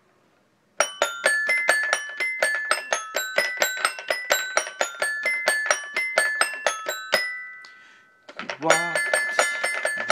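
Little Tikes Jungle Jamboree toy piano-xylophone playing an instrumental run of quick struck notes, about four a second, each ringing briefly on the toy's metal bars. About seven seconds in, the run stops on a note that rings out and fades. Playing resumes a second later.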